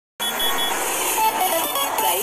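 A radio station's traffic-report jingle: a short music sting with a few quick high beeps, starting a moment in.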